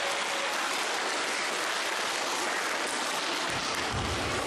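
A small group of people clapping their hands in steady applause.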